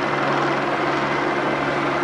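Steady, unbroken engine drone with a low hum over street noise, from the emergency vehicles and traffic on the boulevard.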